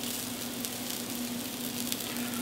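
Arborio rice and asparagus tips sizzling softly as they toast in oil in a nonstick skillet, the rice starting to brown before any liquid goes in. A faint steady hum runs underneath.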